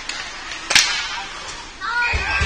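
A single sharp crack from play on an ice-hockey rink, a little before halfway through, over the murmur of a crowd in the arena. Arena music starts right at the end.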